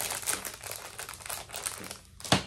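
Plastic packaging crinkling as it is handled, a run of irregular crackles.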